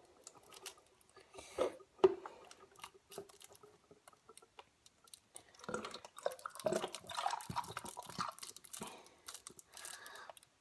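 Milk poured from a carton into a plastic toddler cup, gurgling and splashing, heaviest in the second half. A couple of sharp knocks about one and a half to two seconds in.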